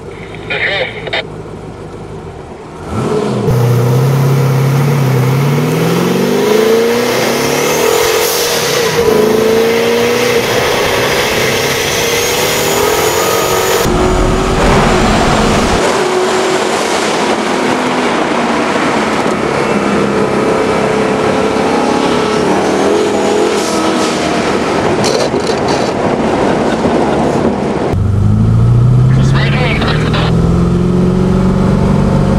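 Twin-turbocharged 572 cubic inch big-block V8 in a 1969 Camaro pulling hard under heavy throttle. The loud engine note starts about three seconds in and climbs in pitch, and a faint high whistle rises above it. Another hard pull starts near the end.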